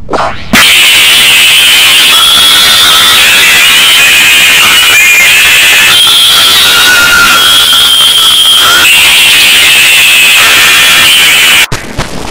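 Extremely loud, clipped and distorted audio from an effects-processed edit, with shrill tones that jump in pitch every second or two. It starts about half a second in and cuts off suddenly near the end.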